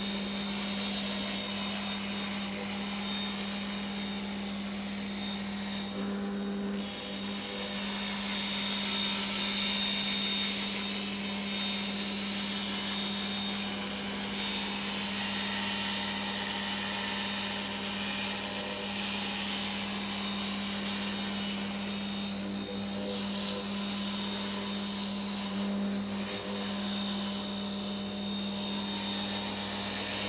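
Table saw running steadily with an industrial fine-finish blade ripping through a pine door frame, the dust extractor drawing through the overhead guard.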